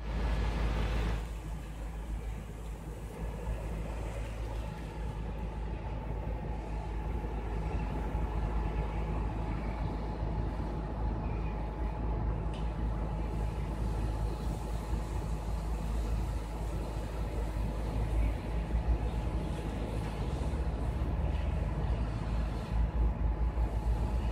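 Heavy diesel engine running steadily under a low rumble, with a faint steady high tone over it.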